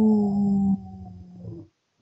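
A woman's voice imitating a long animal howl: one drawn-out 'oo' that sags slightly in pitch, drops off about three-quarters of a second in and trails away quietly.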